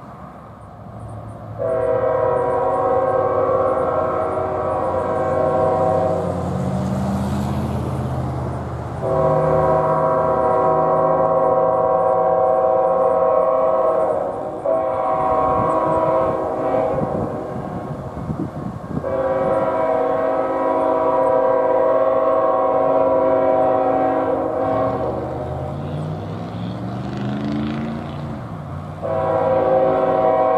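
A CSX diesel freight locomotive sounds its multi-chime air horn for a grade crossing. There are two long blasts, a short one, another long one, and a further blast starting near the end. Under the horn the diesel engine rumbles, rising in pitch twice as the train comes on.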